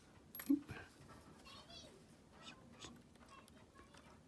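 Steel tweezers clicking against a small mechanical watch movement as a bridge is worked loose. There is one sharp click about a third of a second in, then a few faint light ticks and scrapes of metal on metal.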